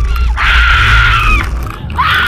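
A roller coaster rider screaming: one long, high scream that falls off at its end, with a second scream starting near the end, over wind rumbling on the microphone.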